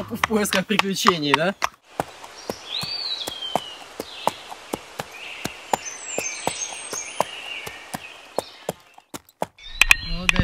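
Horse's hooves clopping on asphalt at a walk, about three hoofbeats a second, with a few bird calls over them.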